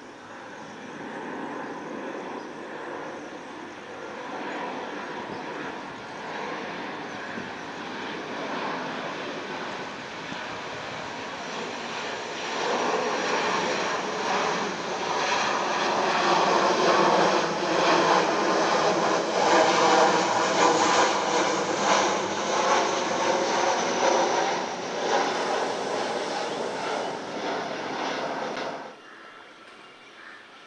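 Boeing 737-800 jet airliner with its gear down passing low overhead on approach: the noise of its CFM56 turbofan engines builds, is loudest a little past the middle with a pulsing, rippling texture, then stops abruptly near the end.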